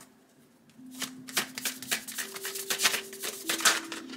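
A deck of tarot cards being shuffled by hand: a rapid run of quick card-on-card flicks and slaps that starts about a second in and keeps going.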